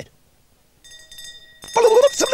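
A fire engine bell ringing faintly and continuously outside, starting about a second in. Near the end a louder short vocal sound with a rising then falling pitch comes in over it.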